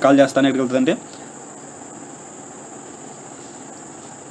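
A man's voice says one word in the first second, then only a steady high-pitched whine over faint background hiss.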